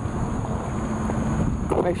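Steady low rumbling background noise, with a voice starting at the very end.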